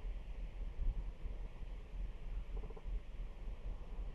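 Low, uneven rumble of background noise with a faint haze above it.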